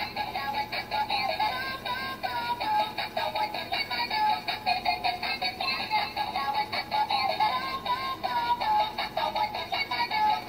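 Battery-powered light-up bubble gun toy playing its built-in electronic song: a tinny synthesized tune with a synthetic singing voice and a steady beat, running on without a break.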